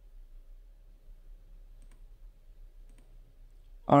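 Two faint computer mouse clicks about a second apart, over a low steady hum; a man's voice starts right at the end.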